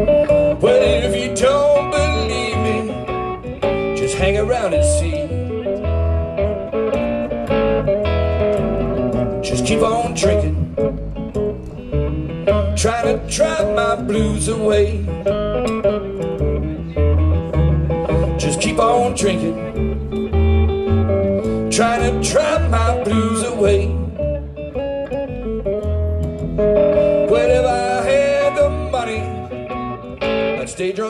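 Live blues instrumental: a harmonica cupped against a vocal mic plays bending, wavering lines over a hollow-body electric guitar and a plucked upright bass walking a steady beat.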